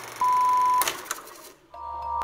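A short electronic beep at one steady pitch, about half a second long, followed by two sharp clicks and a moment of near silence. Near the end, music starts with a low hum and regular ticking notes.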